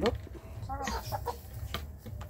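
Hens clucking, a few short soft calls about a second in.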